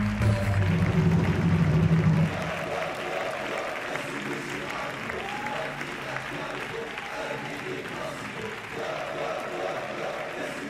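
A music track with a heavy bass beat that stops abruptly about two seconds in, followed by an audience applauding with scattered voices and cheers.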